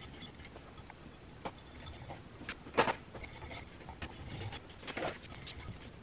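Faint handling noises with a few short clicks, the sharpest about halfway through: light bulbs being handled and screwed into a ceiling fan's light fixture.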